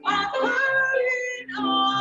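A woman singing a hymn solo with grand piano accompaniment, holding long notes with vibrato.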